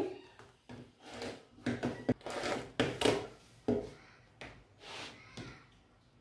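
Layers of quilting fabric being shifted and smoothed by hand over a plastic cutting mat: an irregular run of swishes and rustles with a few light knocks, dying away near the end.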